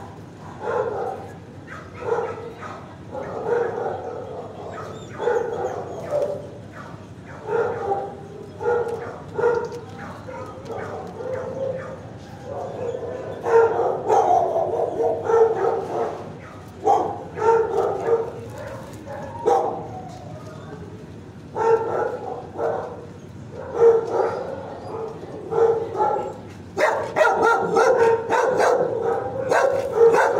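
Dog barking over and over in bouts, about one to two barks a second with short lulls, busiest near the end.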